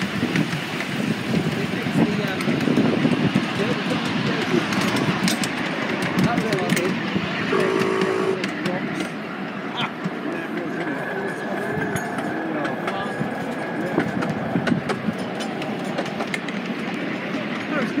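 Indistinct voices over the steady running noise of a ride-on miniature railway train. A short, steady pitched tone sounds about eight seconds in.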